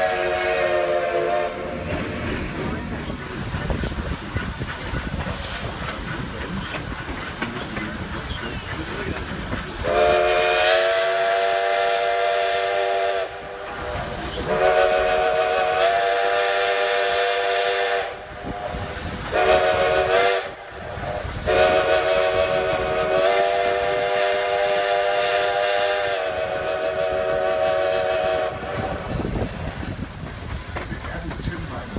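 Steam whistle of Black Hills Central Railroad locomotive No. 110, heard from a coach behind it. It sounds a chord of several notes in the grade-crossing signal: long, long, short, long, the last blast held longest. Before the signal, after a brief blast at the start, there are several seconds of the train's rolling running noise.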